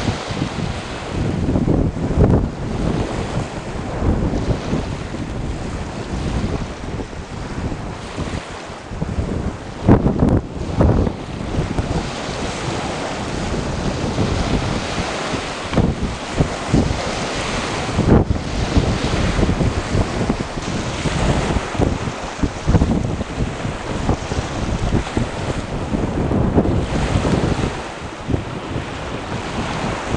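Strong wind buffeting the camcorder microphone in uneven gusts, over the wash of waves on a shore.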